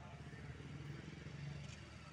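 Faint outdoor ambience with a low, steady engine hum.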